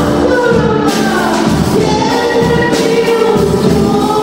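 A girl singing a song into a microphone with a live band of guitars, double bass, accordion and keyboard; the voice carries a gliding melody over a pulsing bass line.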